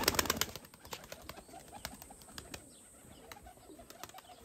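Pigeons' wings flapping: a quick run of sharp claps in the first half-second, then scattered fainter flaps.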